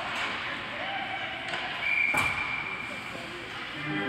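Ice hockey game sounds in an arena: a steady mix of voices and rink noise, with one sharp crack about two seconds in, a puck or stick striking the boards.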